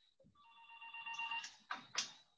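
Telephone ringing faintly: a steady, even-pitched ring lasting about a second, followed by a couple of brief noises near the end.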